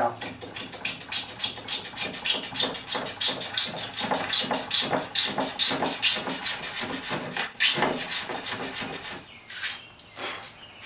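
Stanley No. 60½ block plane shaving a wooden chair seat flat with quick, short strokes, several a second, the run stopping about a second before the end.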